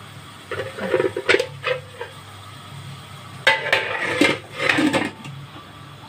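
Large aluminium cooking pot and its aluminium lid clattering and scraping as the lid is put on. There are sharp clinks a little over a second in and a longer, louder clatter a little past halfway.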